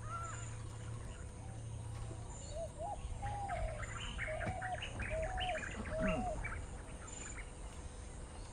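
Birds chirping, a flurry of short rising and falling calls through the middle of the stretch, over a faint steady low hum.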